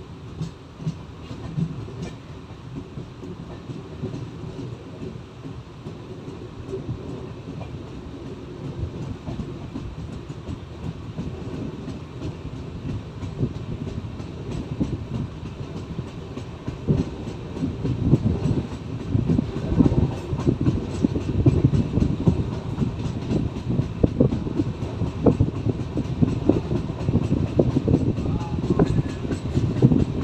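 Steel wheels of an Indian Railways passenger coach rumbling and clattering over the rails, heard from the coach's open doorway, growing louder from about halfway through.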